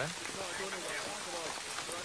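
Steady rain falling on a street in a TV drama's soundtrack, with faint dialogue under it.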